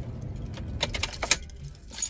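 Handling noise inside a car: a quick run of sharp clicks and light rattles, densest about a second in, as small objects are picked up and moved.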